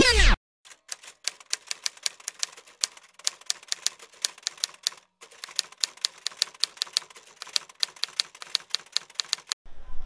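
Typewriter typing sound effect: a run of sharp key clicks, several a second, with short breaks about three and five seconds in. Hip hop intro music cuts off just as it begins.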